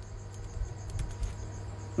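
Faint scratching of a pen writing a few short strokes on paper, over a steady low hum and a thin high-pitched pulsing tone.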